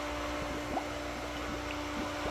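Primed water pump running with a steady hum while water gurgles and drips from the return lines in scattered little bubbling pops: the pump has caught its prime and flow is coming through.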